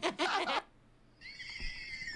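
Laughter, then after a short pause a high-pitched, wavering vocal squeal of about a second that falls slightly at the end.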